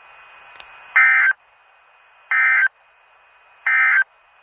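NOAA Weather Radio EAS end-of-message signal: three short bursts of SAME data tones, evenly spaced about 1.3 s apart, marking the end of the warning broadcast. A faint steady radio hiss lies between the bursts.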